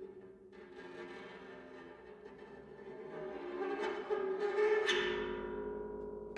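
Bass zither played with extended techniques: overlapping sustained, ringing tones swell louder, then a sharp struck note about five seconds in rings on and fades.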